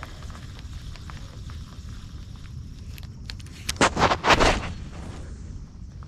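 Low steady wind rumble on the microphone, then about four seconds in a short cluster of loud rushing, buffeting noise as a spinning rod is swung through a cast.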